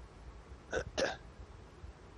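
Two short throat sounds from a man, about a quarter of a second apart, near the middle.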